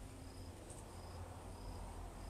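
Faint insect chirping: short high chirps repeating evenly about twice a second, over a low steady hum.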